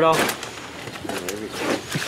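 Speech only: a man's voice ends right at the start, then quieter voices carry on in the background.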